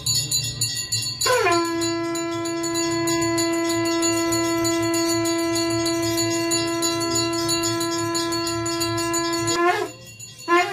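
Small bells ringing, then about a second in a conch shell (shankh) is blown in one long, steady note held for about eight seconds, swooping up as it starts and cutting off just before the end, with bell ringing going on underneath.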